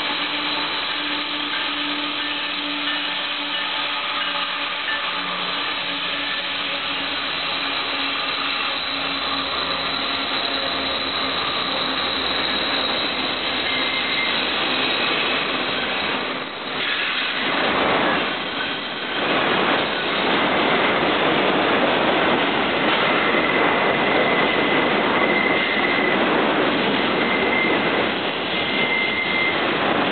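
Norfolk Southern freight train led by diesel locomotives, their engines running at a steady pitch as they approach and go by. From about 17 seconds in, intermodal cars roll past with continuous wheel-on-rail noise and a thin, high squeal that comes and goes as they take the curve.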